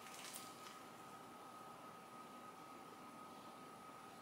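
Near silence: quiet room tone with a faint steady high whine, and a few faint bite and chewing sounds from eating buttered toasted sourdough in the first second.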